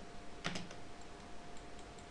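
A few faint clicks from computer input while working in the software, the clearest about half a second in, over a faint steady hum.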